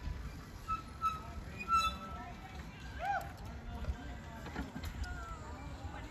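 Quiet outdoor sound of faint voices, with a few short chirp-like tones and light knocks.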